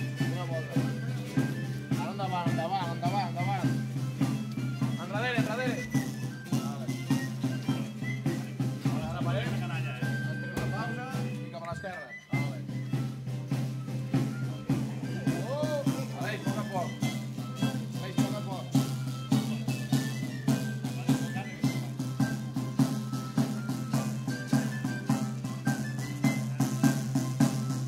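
Live folk dance music from a small band: a drum keeping a steady beat under a wavering violin melody, over a low sustained note, with a brief dip in the sound about twelve seconds in.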